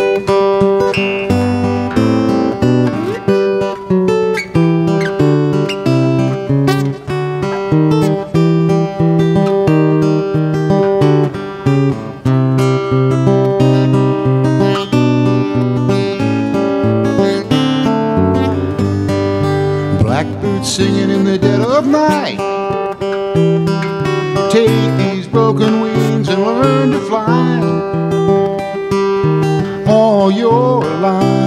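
Solo acoustic guitar played with notes picked one at a time over a moving bass line, with no singing.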